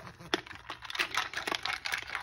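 Irregular run of light plastic clicks and rattles from a personal blender's plastic cup and lid being handled.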